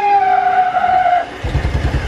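Electric motor of an RV slide-out whining as it drives the slide in, its pitch sagging slowly under load. Near the end the whine gives way to a rapid low rattle as the slide binds and stops moving.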